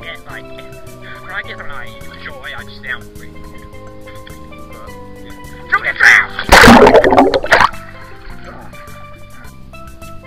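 Background music with a steady melody, and about six and a half seconds in a loud splash and churning of pool water lasting about a second as a plush toy is plunged under the surface.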